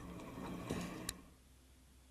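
Faint room noise with two small clicks, about two-thirds of a second and a second in, then near silence.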